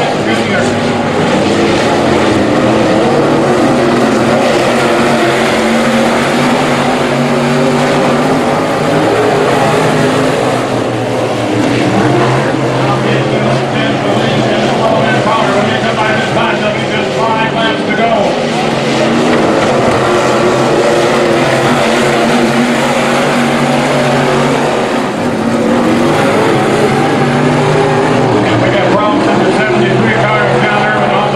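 Dirt-track sport modified race cars' V8 engines running continuously and loud as the field circles the oval, the pitch swelling and easing as cars pass.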